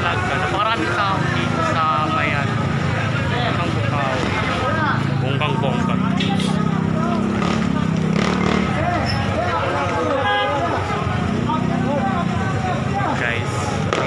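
People talking close by over steady street traffic noise, with a vehicle engine louder for a few seconds near the middle.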